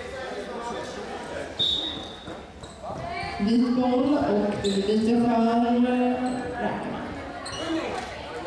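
A basketball bouncing on a sports hall floor during a youth game, with young voices calling out. The calls are long, drawn-out and loud from about three and a half to six and a half seconds in. A short high squeak comes about a second and a half in.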